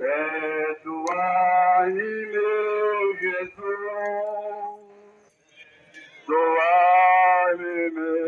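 Male voices singing a hymn in long held notes, phrase by phrase, with a short pause about five seconds in.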